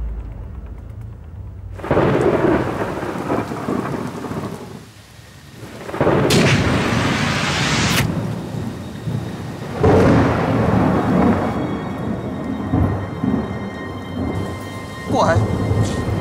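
Thunderstorm: heavy rain with loud thunderclaps, the crashes swelling up about two, six and ten seconds in.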